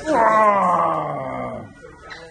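A loud, drawn-out vocal cry that starts suddenly and falls steadily in pitch, fading out after about a second and a half.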